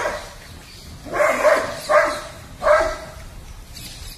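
Three short, loud animal calls, evenly spaced about three-quarters of a second apart, over a faint steady background.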